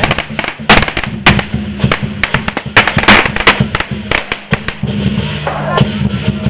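Firecrackers going off in a rapid, irregular string of sharp cracks, thickest in the first half, over lion-dance drumming.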